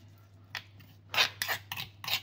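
A metal spoon scraping and stirring wet chili sambal in a stone mortar (cobek). There are a few short scrapes, most of them in the second second.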